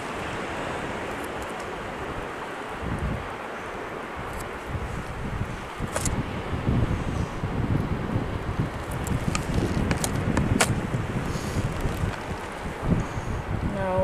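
Wind buffeting the microphone in uneven gusts, strongest in the second half. A few short, sharp snips of scissors cutting through mackerel bait.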